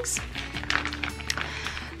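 Soft background music holding a steady note, with light, irregular crinkling as a fabric watertight dry bag is unfolded by hand.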